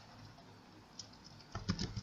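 Computer keyboard keystrokes: one light key press about a second in, then a quick run of several keys near the end.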